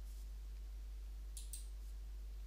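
Two quick faint clicks about a second and a half in, a computer click advancing the presentation to the next slide, over a steady low electrical hum.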